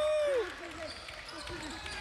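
A basketball bouncing on a gym floor during a game, with faint players' voices in the background; a voice trails off in the first half-second.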